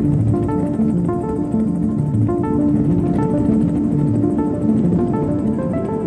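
Background music: plucked string notes over a held low tone, steady throughout.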